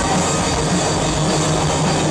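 A rock band playing live: electric guitars and drum kit together, loud and steady.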